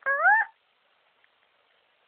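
A person's high-pitched voice saying a short questioning "Huh?", rising in pitch and lasting about half a second.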